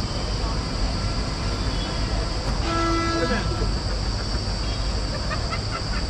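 Steady roadside traffic rumble, with a vehicle horn sounding briefly about three seconds in and then dropping away in pitch.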